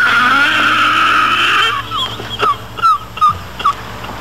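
Car tyres squealing in a skid for about a second and a half, followed by a few short high squeaks.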